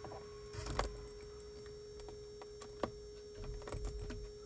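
A few light clicks and rustles of a USB-C cable being handled and tucked by hand against the windshield and headliner trim: one pair about half a second in, one near the middle, and a small cluster near the end. A steady faint hum runs underneath.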